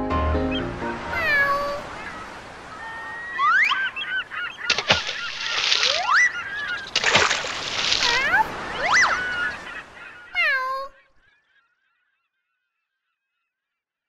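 Cartoon sound effects: a string of squeaky, whistle-like pitch glides, some falling and some sweeping up, broken by two short whooshes.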